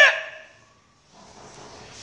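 A man's voice trailing off at a pause in his speech, then a moment of near silence and a faint hiss of room noise.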